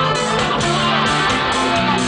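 Live rock band playing an instrumental passage, led by guitar with sustained chords, heard from within the concert audience.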